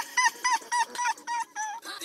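A rapid run of about seven short, high squeaks, evenly spaced, each a brief chirp that bends in pitch.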